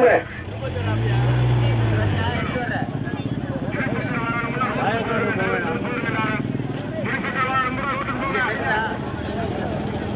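A motor engine revs up and back down about a second in, then runs steadily. Over it come the voices and shouts of a crowd of men.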